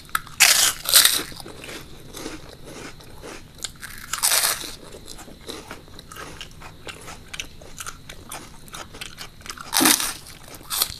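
Close-miked crunchy bites into crisp deep-fried snacks, followed by chewing. Loud crunches come about half a second and a second in, again around four seconds, and once more near the end, with softer chewing between them.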